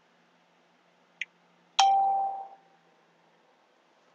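A single bell-like ding: one clear struck tone that rings and dies away within about a second, just after a faint click. It marks the start of a moment of silence for prayer.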